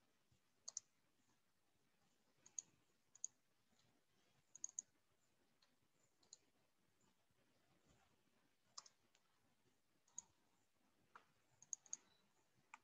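Faint, scattered clicks of a computer mouse and keyboard, several in quick pairs, with near silence between them.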